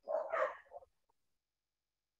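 A short breathy voice sound, under a second long, then the sound cuts off to complete silence.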